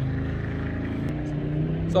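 A motor vehicle's engine running steadily, a low hum whose pitch shifts slightly partway through.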